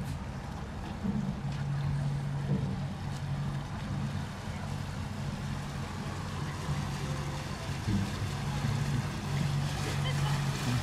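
Low, steady hum of a motor cruiser's engine running at slow speed on the river, swelling and easing every second or two, over a light hiss of wind and water.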